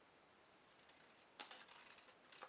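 Scissors cutting cardstock: one short, faint snip about one and a half seconds in, followed by a few fainter clicks. The rest is near silence.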